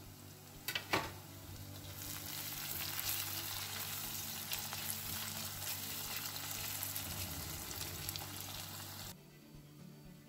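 Chopped onions frying in olive oil in a nonstick pan, stirred with a silicone spatula: a couple of sharp taps about a second in, then a steady sizzle that swells about two seconds in and cuts off abruptly near the end.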